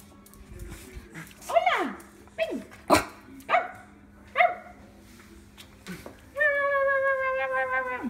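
Small white dog barking a few short high yips, then giving a long, steady high-pitched whining cry near the end.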